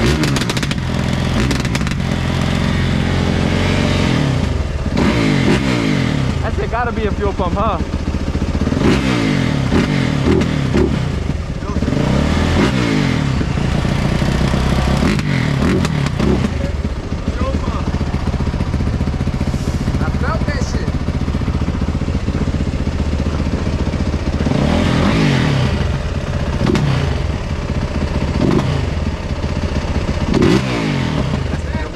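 Several dirt bike engines running at idle, with repeated revs that rise and fall in pitch every few seconds.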